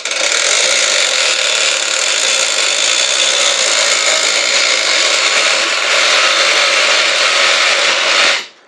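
Geared-down manual chain hoist made from garage door parts, its hand chain pulled hand over hand. The chain and gearing run with a steady, continuous metallic rattle as the hoist lowers a heavy elevator bed.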